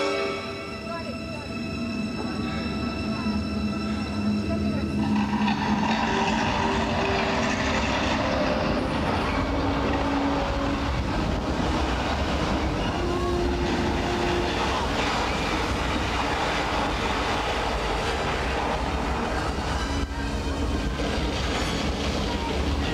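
Deep, continuous rumbling from a stunt show's effects soundtrack, building up over the first few seconds as the music cue ends and then holding steady with a noisy crashing hiss.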